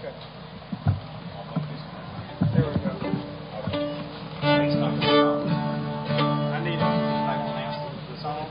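Acoustic guitar strummed once, with the chord left ringing and slowly fading, about four and a half seconds in. It is a check strum before a fiddle tune. Before it there are scattered voices and small knocks.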